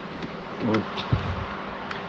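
Steady background hiss with a faint buzz, broken by one short spoken word a little after half a second in.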